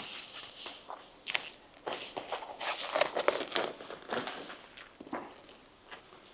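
Irregular clicks, scrapes and rustling of hands handling a foam flying wing, as the LiPo battery is slid a few millimetres back in its bay to shift the centre of gravity.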